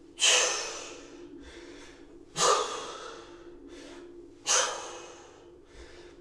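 A man breathing hard during single-arm kettlebell rows: a sharp, forceful exhale about every two seconds, three in all, each trailing off, with quieter inhales between them.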